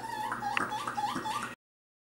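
Porcupine whining: a quick run of short, rising cries, about four a second, cut off suddenly after about a second and a half.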